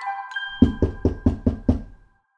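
The tail of a short descending music sting, then a rapid run of about six knocks on a door, around five a second.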